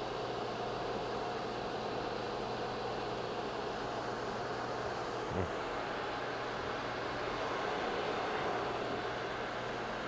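Tschudin HTG 310 universal cylindrical grinder running, a steady mechanical hum with its table traversing. One short low knock comes about halfway through.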